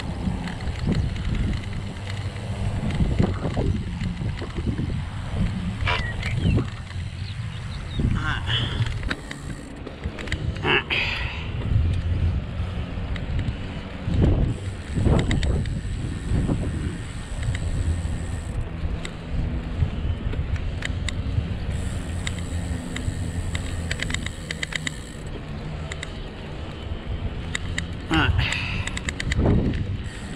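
Wind rumbling on the microphone during a bicycle ride, with scattered clicks and rattles from the bike.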